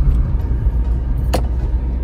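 Car running along a road, heard from inside the cabin: a steady low engine and road rumble, with one sharp click about a second and a half in.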